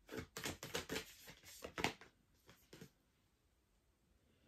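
A deck of cards being shuffled by hand: a quick run of short sharp card strokes for about two seconds, then a few more a moment later.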